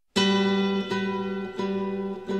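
Instrumental music begins abruptly from silence: a plucked string instrument sounds single notes about every three-quarters of a second, each one ringing on into the next.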